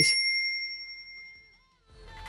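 A single bright bell ding sound effect for the subscribe-bell click, ringing clear and fading out over about a second and a half.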